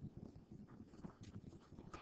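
Near silence: room tone with faint, irregular low bumps and a few soft ticks.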